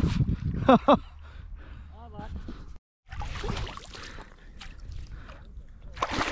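A man's short exclamations early on. After a brief break there is water splashing and sloshing from a hooked fish thrashing at the surface near the boat.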